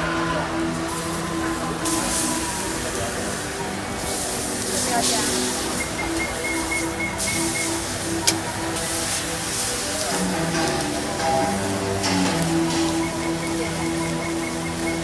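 Music and voices over a steady hiss of sausages and pork belly sizzling on a flat griddle, with a sharp click about eight seconds in.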